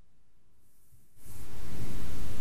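Faint room tone. Just over a second in, a steady hiss comes up sharply and holds: the recording's background noise, raised in level.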